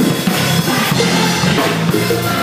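Church band music with a drum kit playing under pitched instruments.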